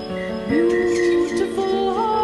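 A band's live music: layered, sustained held tones, with one note sliding up into a long held note about halfway through.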